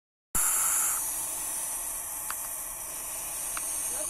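Barn owl chicks hissing: a steady, high hiss, loudest in the first second.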